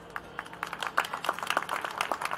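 Small audience clapping, scattered claps at first that grow denser after about half a second.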